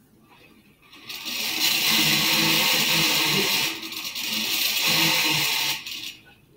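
Small homemade brushed DC electric motor spinning as its wire brushes make contact with the commutator pads, giving a loud whirring buzz. It starts about a second in, dips briefly past the middle and cuts off just before the end.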